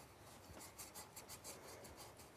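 A Triss scratch-off lottery ticket being scratched with a scraper: a faint, rapid run of short scraping strokes.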